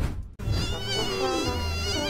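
Bees buzzing around, a wavering swarm buzz that starts about half a second in and keeps on at a steady level.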